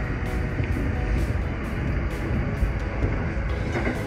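Electric passenger train running along the track, a steady rumble heard from inside its rear cab, with background music laid over it.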